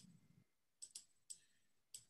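A few faint, short computer-mouse clicks, about five spread over two seconds, against near silence.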